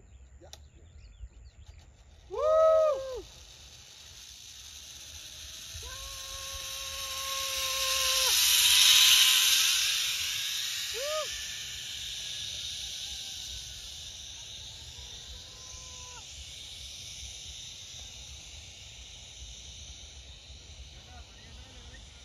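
Zipline trolley running along the steel cable: a hiss that swells as the rider comes closer, peaks about nine seconds in, then fades as the rider moves away. A rider's short whoop comes about two and a half seconds in, and a long held call follows a few seconds later.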